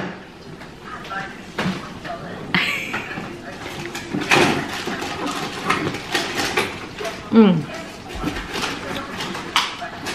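Close-up eating sounds of someone biting into and chewing a ripe, juicy peeled mango, with many short wet clicks, busiest in the middle of the stretch, and a small knife paring away the peel.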